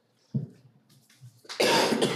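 A short thump about a third of a second in, then a loud, harsh cough near the end.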